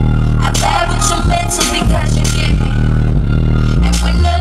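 Loud live hip-hop music through a concert PA, with a heavy bass line and a female rapper's vocal over the beat.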